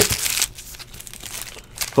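Foil trading-card pack wrappers crinkling as they and the cards are handled, with a few light ticks.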